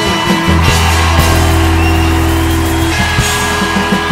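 Live rock band playing an instrumental passage: long held notes over steady drums.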